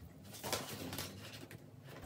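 Stiff nylon crinoline rustling softly as it is folded over by hand, in a few light crinkles.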